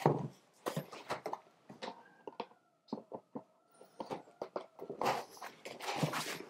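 Light clicks and knocks of a fixed-wing mapping drone's foam wings being slotted into the body and the airframe handled on a wooden table, ending in a rustling, sliding sound. A faint, thin whine runs through the middle.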